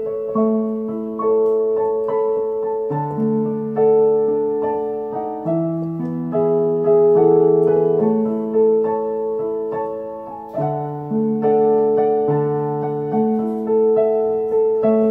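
Yamaha digital piano playing a slow hymn accompaniment in held chords, a melody over a moving bass line, with the harmony changing about once a second.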